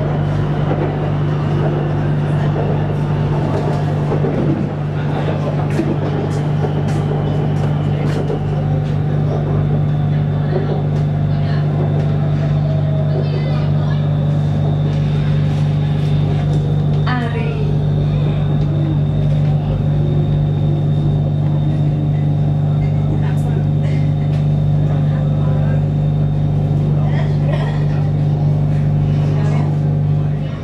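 Running noise of an elevated BTS Skytrain car heard from inside: a steady low hum with fainter motor tones that glide in pitch, and short bursts of voices.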